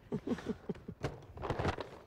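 A woman laughing in a quick run of short, falling bursts, then the crackle of paper grocery bags as items are packed into them at speed.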